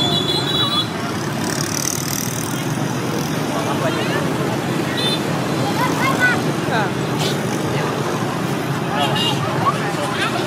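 Steady street traffic noise with people talking in the background and a few short high beeps near the start, midway and near the end.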